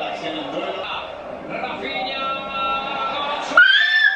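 Voices from a televised football match, with a held, tuneful tone in the middle, then a sudden high rising cry near the end.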